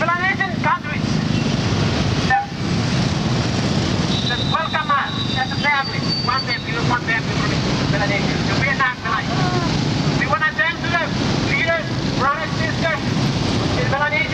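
Steady street traffic noise, with people talking over it in bursts.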